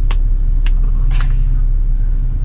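Steady low rumble inside a running car's cabin, with a few short clicks and a brief breath about a second in.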